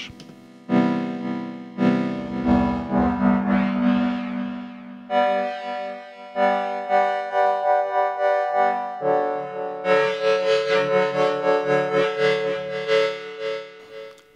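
Modal Argon 8M wavetable synthesizer playing a patch with phase modulation between its oscillators. Held notes with many overtones change pitch about five and nine seconds in, the volume pulsing several times a second, while the tone shifts as the knobs are turned.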